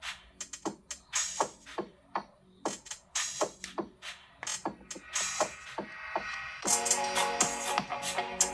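A dance track playing through the iQOO 9T's dual stereo speakers as a loudness test: sharp, spaced beats, joined about two-thirds of the way in by held chords.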